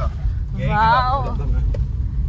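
Steady low road and engine rumble inside the cabin of a moving car. A drawn-out, wavering vocal cry from a voice in the car rises over it for under a second, a little before the middle.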